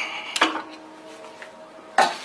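Metal engine parts clinking as a component at the front of the block is tapped and worked loose: a sharp metallic strike about half a second in that rings on briefly, and another sharp clink at the end.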